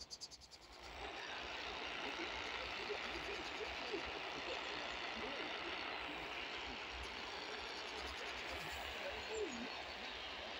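Steady static hiss from a Sihuadon R-108 portable radio being tuned between stations, rising in about a second after the broadcast voice cuts off, with faint wavering tones in the noise.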